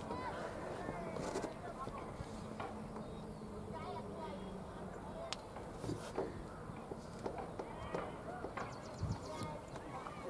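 Faint open-air ambience with distant, indistinct voices and scattered short chirps and ticks.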